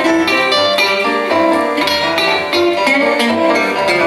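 Small live band playing a song: acoustic guitar, electric bass guitar and electric keyboard together, with plucked guitar notes and keyboard chords over the bass.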